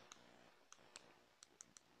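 Near silence with a handful of faint, sharp clicks, scattered irregularly: a stylus tapping on a tablet screen while handwriting Chinese characters.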